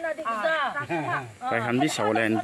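Only speech: people talking in conversation.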